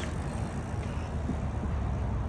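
Steady low rumble of road traffic heard from a parking lot, with no distinct clicks or whine over it.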